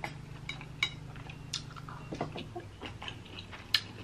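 Scattered small clicks and ticks of eating snow crab: the meat being picked from the shell by fingers and chewed, about a dozen soft irregular ticks.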